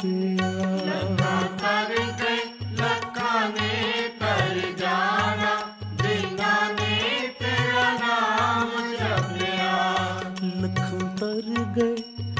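Devotional shabad kirtan music: a melody that bends and slides in pitch over a steady drone and a regular low drum beat.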